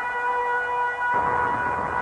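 Brass music, a long held note; a fuller chord with lower instruments joins about a second in.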